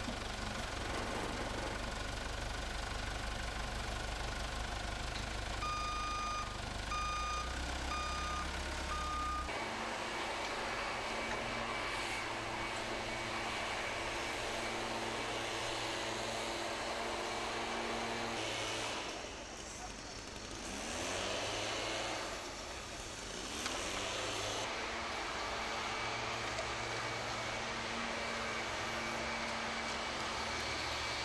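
Truck engine running with a reversing alarm beeping several times in an even run, starting about six seconds in, over steady street noise.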